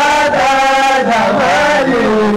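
A man's voice chanting Islamic devotional praise in long held notes that dip and bend in pitch between phrases.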